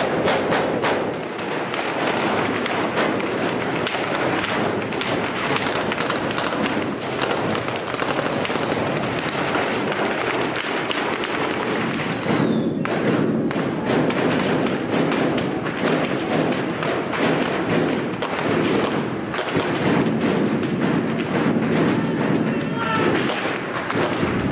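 Dense, unbroken crackle of gunfire with thuds, the shots too many and close together to count.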